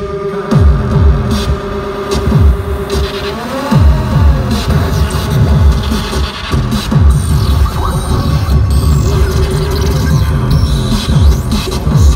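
Loud live electronic rock music from a band's synthesizers, recorded from the crowd: a held synth tone over a run of quick falling bass sweeps and glitchy electronic noise.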